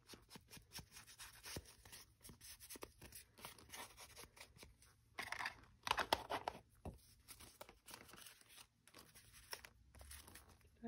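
Faint paper handling and small clicks on a craft table, with two brief scrubbing sounds a little after five seconds in as a foam ink blending tool is rubbed on an ink pad.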